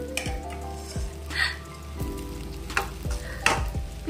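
Aubergine slices shallow-frying in oil in a non-stick pan, sizzling steadily. A wooden spatula knocks and scrapes against the pan several times.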